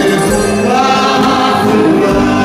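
A man sings a Greek laïkó song live into a handheld microphone, with a band including acoustic guitar accompanying him. He holds long sustained notes.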